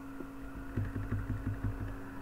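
Faint computer keyboard key presses, a run of soft taps, over a steady electrical hum.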